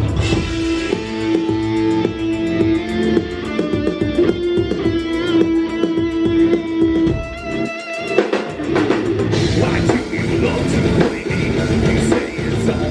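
Live rock band playing, an electric guitar holding long sustained notes over drums and bass. The low end drops out briefly about eight seconds in, then the full band comes back in with cymbals. The recording sounds muffled.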